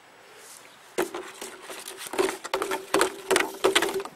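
Plastic bottles of a homemade bird-scarer rattle knocking and crinkling against each other as they are handled: a rapid, uneven run of light hollow clicks and knocks starting about a second in.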